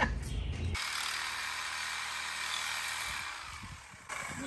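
Cordless reciprocating saw cutting metal on an automatic transmission's case: a steady cutting noise from about a second in, fading out near the end.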